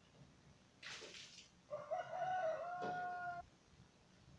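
A rooster crowing once, one call of about a second and a half held on a steady note before it breaks off, preceded by a short breathy rustle.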